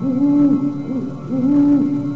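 Owl-like hooting over eerie background music: a long low hoot, a short one about a second in, then another long hoot near the end.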